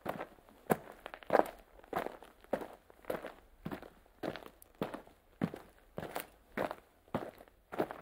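Footsteps of a person walking at an even pace, a little under two steps a second, each step a short knock.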